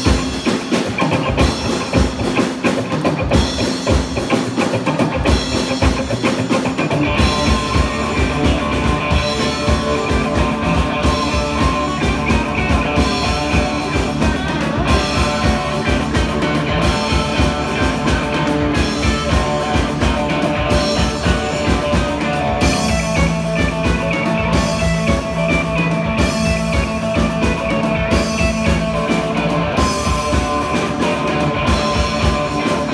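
Live instrumental rock band playing: electric guitar over a drum kit. The low end fills out about seven seconds in, as the full band comes in.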